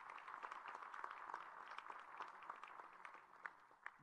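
Audience applauding, faint and steady, thinning out toward the end.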